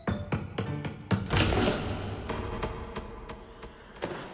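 Cartoon background music over quick running footsteps on a wooden gym floor, about five steps a second, then a louder thump with a rush of noise about a second in as the runner hits the vault, fading away after.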